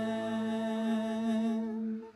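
The held final chord of a worship song, sustained with a gentle wavering vibrato, fading out near the end.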